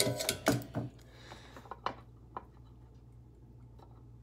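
A few sharp clicks from the soldered 1/4-inch TRS plug and its cable being handled at the amplifier's input jack. Between them there is a faint, steady low hum.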